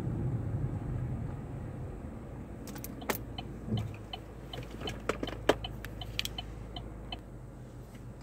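A car's low rumble fading as it slows and pulls over. From about three seconds in comes a run of sharp clicks and taps, loudest about five seconds in, from a phone camera being handled and repositioned.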